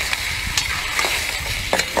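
Seafood sizzling in a hot wok over a gas flame as a ladle of chili sauce is poured in. A few short clicks come from the metal ladle against the wok.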